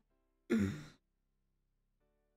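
A man's short sigh: one breathy exhale lasting about half a second, starting about half a second in.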